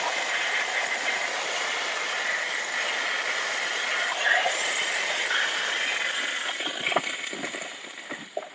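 Steam cleaner blasting steam through a single-hole nozzle at a little under half pressure: a steady hiss that tails off about seven seconds in, followed by a few soft knocks.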